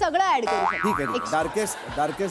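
A comic 'boing'-style sound effect whose pitch swoops up and down twice, about a second in, over a woman's speech.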